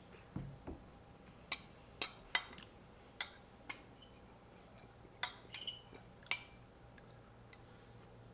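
Metal spoon clinking and scraping against a small ceramic bowl: a series of short, sharp, irregularly spaced clinks.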